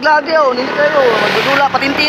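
A man talking, with the noise of a vehicle passing on the road swelling and fading about a second in.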